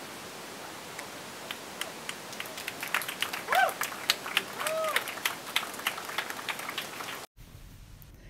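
Audience applause: scattered hand claps start about one and a half seconds in and build into steady clapping, with two short voiced whoops in the middle. The clapping cuts off abruptly near the end.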